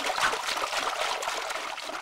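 Water splashing as a swimmer paddles across a pond, a busy run of small splashes.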